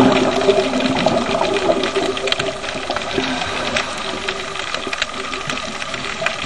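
Scuba regulator heard underwater: a burst of exhaled bubbles at the start that fades within about a second and a half, then a quieter hiss with scattered small clicks.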